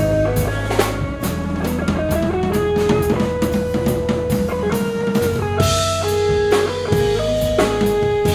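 Live instrumental rock band: electric guitars playing a repeating riff over a drum kit with cymbals and bass drum. A lead line of held notes steps between pitches above the band.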